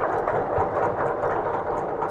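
Audience applause, a steady dense sound with no break, right after the talk ends.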